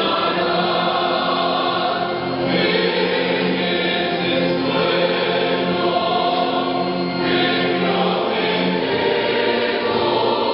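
A large church choir singing a hymn, holding long sustained chords that change every second or two.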